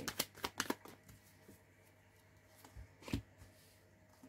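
A deck of oracle cards handled and shuffled by hand, with a quick run of card flicks in the first second. A couple of taps about three seconds in come as cards are laid down on the table.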